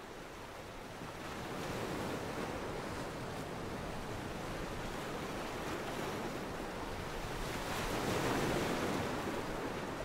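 Ocean surf washing onto a sandy beach, a steady rush of breaking waves that swells about two seconds in and again around eight seconds in.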